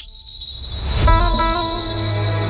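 Dramatic background score: a sustained high tone over a low drone, swelling louder. About a second in comes a brief whoosh-hit, and a held chord follows.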